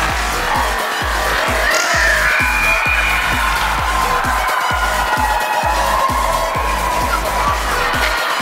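Background music with a steady, heavy bass beat.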